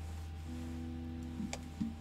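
D'Angelico Premier SS semi-hollowbody electric guitar's strings ringing faintly, two steady notes held for about a second, over a low steady hum, with a light click near the end.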